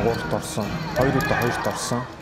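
Speech: a voice talking in Chinese.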